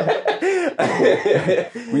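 Several men laughing together, their laughs overlapping with bits of talk.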